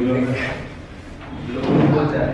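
Brief indistinct speech in a large hall: a voice at the start and again near the end, with a short lull between.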